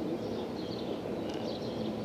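Outdoor ambience: a steady low background noise with small birds chirping repeatedly in short high calls.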